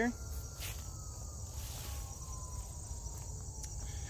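Steady, high-pitched insect chorus over a low rumble.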